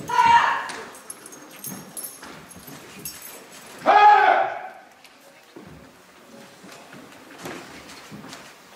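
Two loud karate kiai shouts from young competitors performing the kata Saifa, one right at the start and a second about four seconds later, each under a second long. Faint taps and rustles of movement lie in between.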